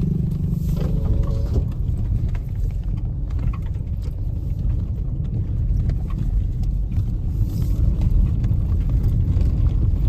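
Low, steady rumble of a moving vehicle mixed with wind noise on the microphone.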